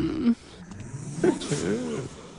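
A man's speech breaks off. A little over a second in comes one short growling roar that rises and falls in pitch.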